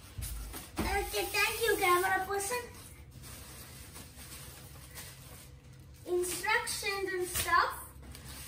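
A child's voice, heard twice in stretches of about two seconds each, with a quiet room hum between them.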